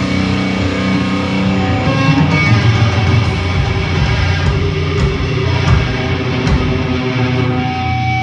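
A live metal band playing loudly, with electric guitar to the fore, heard from among the audience.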